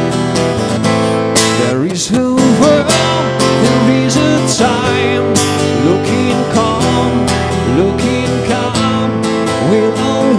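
Steel-string acoustic guitar strummed steadily in a live solo performance, with a voice singing or humming over it from about two seconds in.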